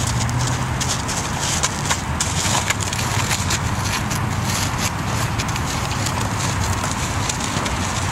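Plastic bag on a training stick rustling and crackling as it is rubbed over a horse, many small crackles throughout, over a steady low hum.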